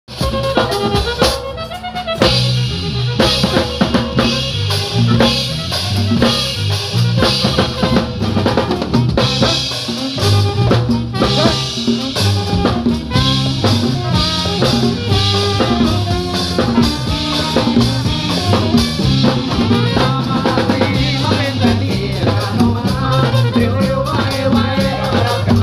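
A live Thai ramwong band playing a steady, upbeat dance rhythm. Microphoned conga-style hand drums and a drum kit with cymbals drive the beat over a stepping bass line and melody.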